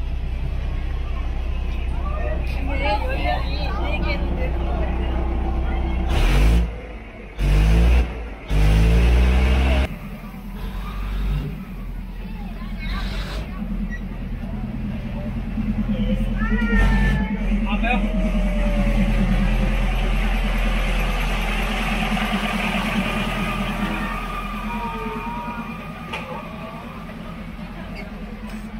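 Thai State Railway diesel railcar rolling slowly past at arm's length: a heavy low rumble and steady engine hum, loudest in surges about six to ten seconds in, dying away near the end as the train clears. Crowd voices are heard over it.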